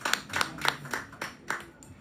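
A few people clapping briefly: uneven, scattered hand claps, about four or five a second.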